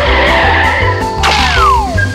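Cartoon whoosh sound effects for a character dashing away, over background music with a steady bass beat. A rush of noise runs through the first second, then a second rush comes with a tone sliding down in pitch near the end.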